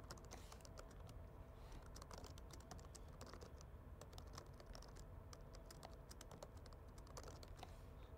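Faint typing on a computer keyboard: quick, irregular key clicks.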